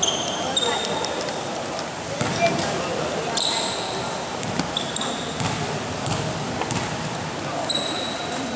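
Indoor basketball game sound: a basketball bouncing on the gym floor, several short high squeaks from sneakers, and the chatter of players and spectators echoing in a large hall.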